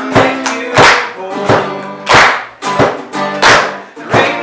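Acoustic guitar strummed in a steady rhythm, with a sharp, loud strum about every two-thirds of a second and lighter strums between, the chords ringing on.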